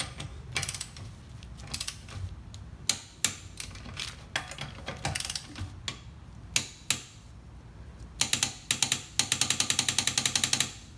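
The ratchet head of a click-type torque wrench clicks in short runs as lug nuts are tightened on a car wheel. A fast run of clicks comes near the end.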